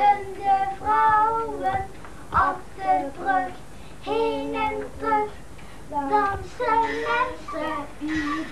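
A young boy singing without accompaniment, holding steady notes in short phrases with brief pauses between them.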